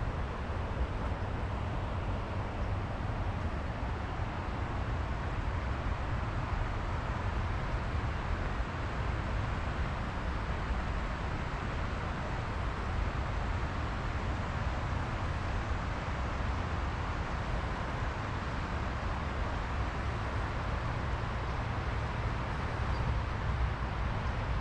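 Steady rushing of fast floodwater in a rain-swollen concrete river channel, with a low rumble beneath it.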